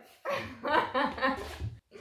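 A man and a woman laughing in several short bursts.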